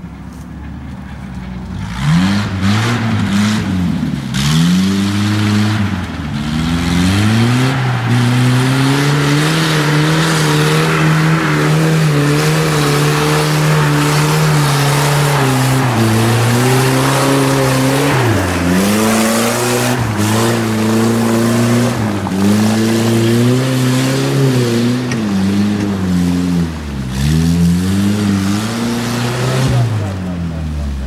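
Off-road 4x4's engine revved hard and held at high revs while wheels churn through deep mud. The revs dip and climb again several times as it fights for grip.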